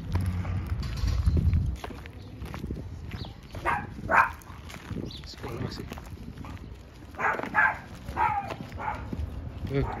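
Footsteps on a gravel-and-dirt path as a dog is walked on a leash, with a few short voice-like sounds, the loudest about four seconds in and another cluster around seven to eight seconds.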